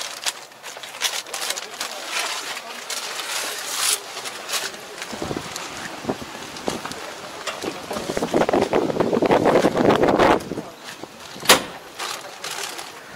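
Knocks and rustling of a handheld camera as someone climbs down from a tractor cab, louder and rumbling in the second half, with one sharp knock near the end.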